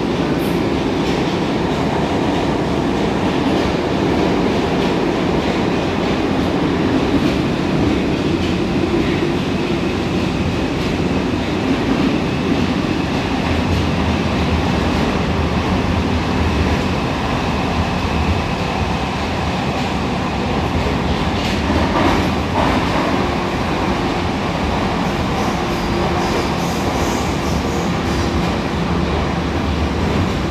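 Moscow Metro 81-760/761 'Oka' train heard from inside the carriage while running at speed: a steady, loud rumble of wheels and running gear with a faint continuous motor hum underneath, and a brief rattle about two-thirds of the way through.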